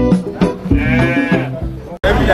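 A sheep bleats once, a wavering call of under a second beginning about two-thirds of a second in, over background music.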